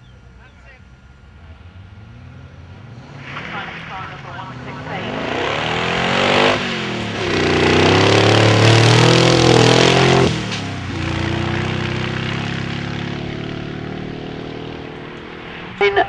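Westfield SEight's Rover V8 accelerating hard up a hillclimb course, its pitch climbing and falling back at each gear change. It is loudest near the middle as the car passes close, then carries on lower and fades with distance.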